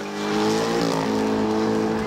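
Chevrolet Corvette's V8 engine revving hard as the car accelerates with its rear wheels spinning. The note holds steady and high, dipping slightly about a second in.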